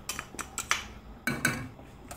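A few light, irregular clinks and taps of kitchen utensils against a stainless steel saucepan, with a louder cluster a little past the middle.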